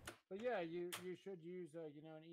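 A faint voice talking quietly in the background, well below the level of the main narration.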